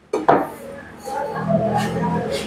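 Metal spoon and fork knocking and scraping against a ceramic soup bowl while stirring bakso, with two sharp clinks just after the start.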